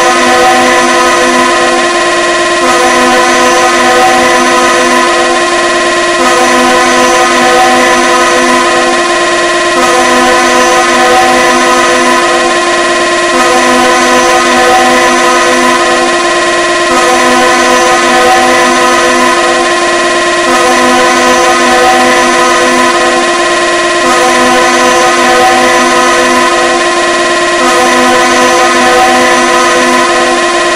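Loud DJ competition music built on a blaring, sustained electronic horn sound, several held tones sounding together. The loop restarts about every three and a half seconds.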